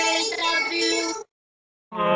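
A boy's voice, electronically processed so that it sounds like a held, synthetic-sounding sung note. It cuts off a little past the middle, and after a short silence another processed voice note starts at the very end.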